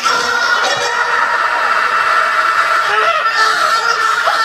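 A crowd screaming and cheering, many high-pitched voices held steadily throughout, with no beat under it.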